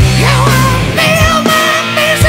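Loud rock music: a full band track with heavy sustained bass notes, drum hits and distorted pitched lines.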